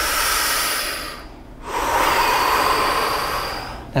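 A man taking a deep diaphragmatic breath close to the microphone: a long rush of air drawn in, a brief pause about a second in, then a longer rush of air let out.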